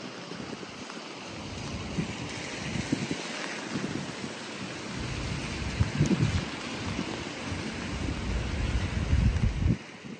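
Rain falling hard on wet pavement in a windstorm, with gusts of wind rumbling on the microphone that grow stronger in the second half.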